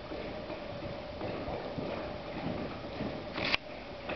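A horse loping on soft dirt arena footing: muffled hoofbeats over a steady faint hum. About three and a half seconds in comes a short, loud rushing burst, the loudest sound.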